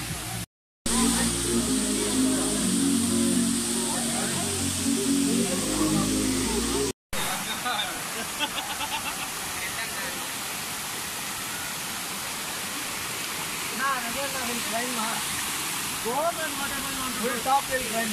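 Background music for the first several seconds, then, after a cut, the steady rush of a waterfall with faint distant voices over it.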